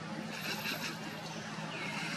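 A steady low hum, like a distant motor, under outdoor background noise. A few faint high chirps come through it about half a second in and again near the end.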